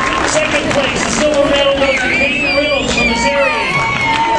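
Crowd of people in a large hall, many voices talking and calling out at once, with a few high, wavering calls in the second half.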